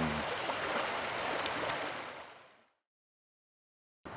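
A river's steady rush of flowing water, fading out to complete silence a little over two seconds in.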